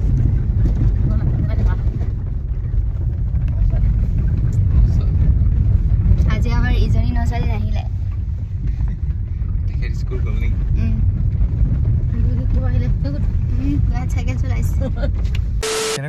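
Steady low rumble of a moving car's engine and tyres heard inside the cabin.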